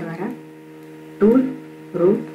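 Steady electrical hum made of several low tones, with short snatches of a voice over it near the start and again a little past halfway.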